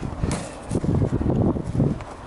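Irregular low rumble of wind buffeting the camera microphone, with a few faint knocks.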